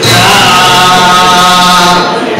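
A live band holding one loud, steady sustained chord that stops about at the end.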